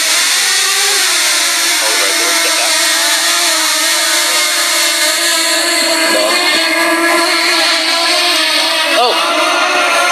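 Small DJI quadcopter drone's propellers buzzing as it lifts off and hovers a few feet up: a steady, loud whine of several tones together, shifting slightly in pitch as it holds position.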